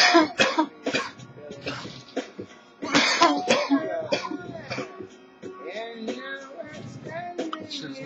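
A man coughing hard, with heavy coughs right at the start and again about three seconds in, over recorded music with singing playing in the room.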